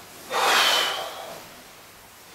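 A man breathing out once, loudly, in a short hissing exhale with a faint whistle, lasting under a second.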